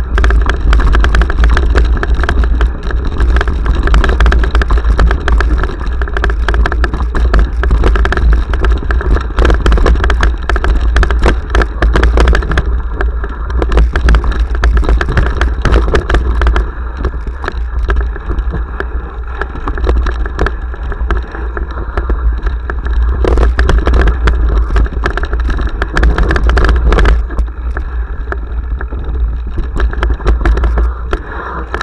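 Mountain bike descending a rocky trail, heard through a handlebar-mounted action camera: a heavy rumble of wind and vibration on the microphone with a constant clatter of tyres, chain and frame over stones.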